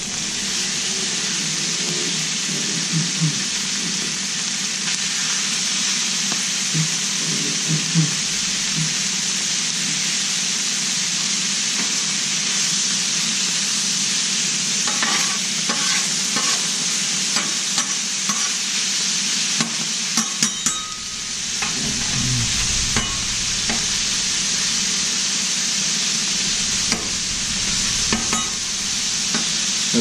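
Chorizo, refried beans and cubed bacon sizzling steadily on a hot steel flat-top griddle. A metal spatula scrapes and taps on the griddle surface as the chorizo is worked, in a run of clicks about halfway through.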